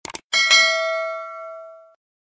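A quick mouse-click sound effect, then a notification-bell ding that rings with several overtones and fades away over about a second and a half, stopping suddenly.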